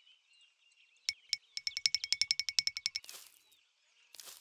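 Cartoon sound effect: two clicks about a second in, then a quick, even trill of bright ringing ticks, about fifteen a second for roughly a second and a half, ending in a short whoosh. Faint bird chirps sound underneath.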